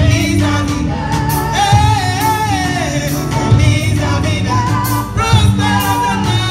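Live gospel music: a singing voice carrying a wavering melody over a band with a steady bass line and regular drum and cymbal hits.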